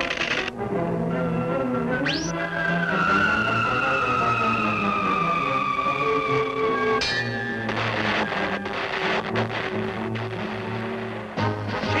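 Cartoon sound effect of a magic tuning fork sounding: a high whistling tone that slowly falls in pitch for about four seconds, over orchestral underscore music. About seven seconds in it breaks off into a burst of noise, the explosion that shatters the fork.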